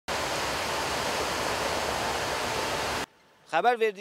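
Steady rushing of muddy river water pouring over a low concrete weir, an even hiss that cuts off suddenly about three seconds in.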